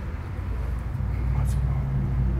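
A low, steady rumble that grows louder about a second in.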